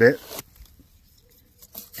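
A man's voice finishing a word, then about a second and a half of quiet with a few faint clicks near the end.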